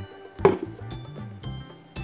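Background music playing, with one sharp knock on the tabletop about half a second in.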